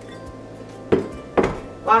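Two sharp knocks about half a second apart, starting about a second in, as a glass mixing bowl is set down on the countertop and a stand mixer's tilt head is lowered and locked.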